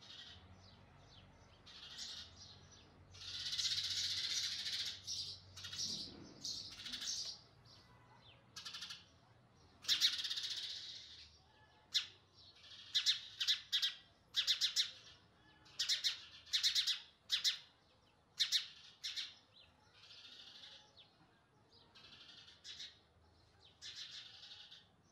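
Baby house sparrow chirping and begging: longer, harsh calls about three seconds in and again around ten seconds, then quick runs of short, high chirps, growing quieter near the end.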